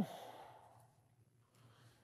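A man's soft breath out just after speaking, fading within about half a second; then near silence with a faint low room hum.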